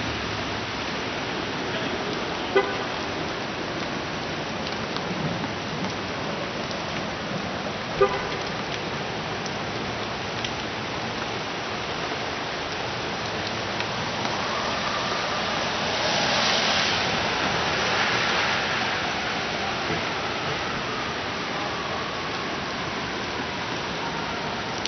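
Wet city street in the rain: a steady hiss of rain and traffic on wet pavement, with a car swishing past and swelling louder a little past halfway. Two short sharp sounds stand out near the start.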